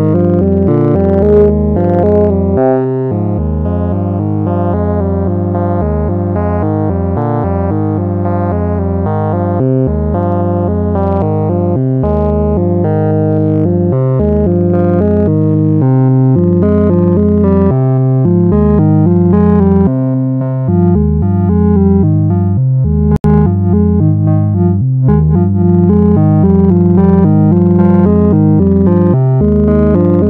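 Electronic synthesizer music from a VCV Rack modular software patch: quickly changing sequenced notes over a sustained low bass. The music briefly drops out for an instant about three-quarters of the way through.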